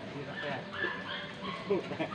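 A dog making short, high-pitched sounds, with people's voices in the background.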